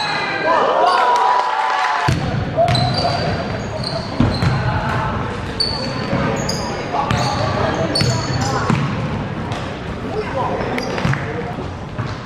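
Live basketball game sound in a sports hall: sneakers squeaking repeatedly in short, high chirps on the wooden court, the ball bouncing, and players and spectators calling out.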